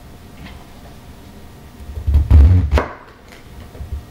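Kitchen knife cutting down through a quarter of a head of cabbage onto a plastic cutting board: a loud cut with heavy thuds against the board about two seconds in, lasting about a second, then a light knock near the end.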